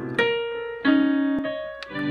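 A young child playing single notes on a piano, slowly: one note struck, then a lower one about two-thirds of a second later, each left to ring and fade before the next begins.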